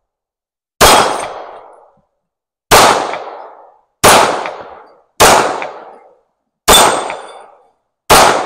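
Ruger Security-9 Compact 9 mm pistol fired five times at an uneven pace, one to two seconds apart. Each shot is sharp and rings off over about a second.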